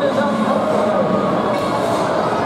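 A rake dragging and scraping through the sand of a long-jump pit, under the steady chatter of a crowd echoing in a large indoor hall.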